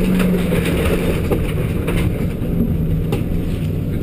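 Vehicle engine drone and ride rumble heard from inside a bare-walled van's passenger compartment while it drives, with a few knocks and rattles as the body jolts.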